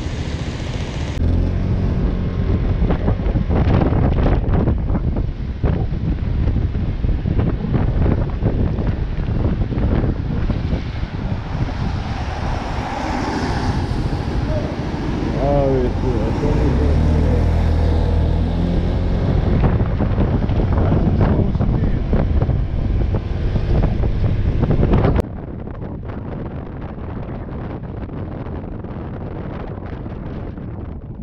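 Riding noise from a Honda PCX 125 scooter on wet roads: heavy wind rush on the microphone over the low hum of its small single-cylinder engine and the tyres. About 25 seconds in the noise drops abruptly to a lower, steadier rush.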